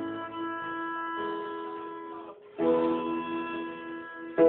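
Violin and piano playing a folk tune together: a held chord fades away over about two seconds, then a new chord starts and rings on.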